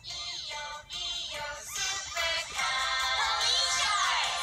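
A children's song with a sung melody playing through a smartphone's small speaker. It sounds tinny with no bass and grows louder about two seconds in.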